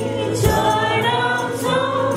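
A worship team singing a gospel song together, a woman's voice leading and the group joining in, backed by guitars with a steady low note and light tambourine strokes.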